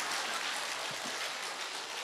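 An audience applauding, a steady even clapping that eases off slightly toward the end.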